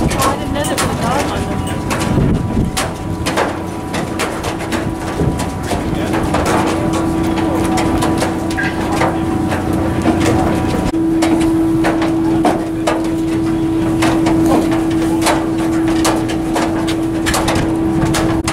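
Footsteps and clanks on a metal boat gangway as a line of passengers walks ashore, with crowd chatter. A steady hum from an idling boat engine comes in about three seconds in and steps up a little in pitch about eleven seconds in.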